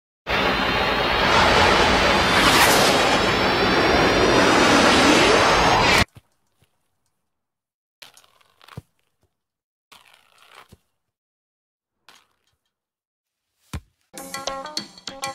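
Intro-animation sound effect: a loud, dense burst of noise with thin high tones running through it, lasting about six seconds and cutting off suddenly. Near silence follows, broken only by a few faint, brief noises.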